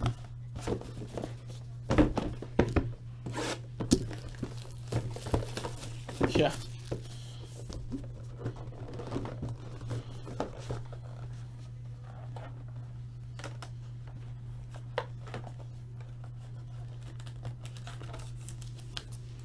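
Cardboard trading-card boxes being handled on a desk: a run of knocks and scrapes as a sealed hobby box is pulled from the case and set down, then the crinkling and tearing of its plastic wrap and lighter clicks of the box being opened.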